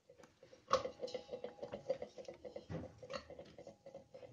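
Chopped guava pieces dropped by hand into a stainless-steel pot: a knock under a second in, then a quick run of light taps with the pot ringing faintly, and a few more taps near the end.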